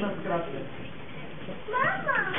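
Voices in a meeting room: the tail end of speech, then a short, high-pitched rising vocal sound near the end.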